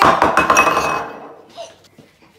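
A glass clinks sharply against a hard surface once as it is set down, and a short ringing follows that fades over about a second.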